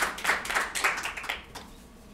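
A small seated audience clapping. The applause thins out and dies away about a second and a half in.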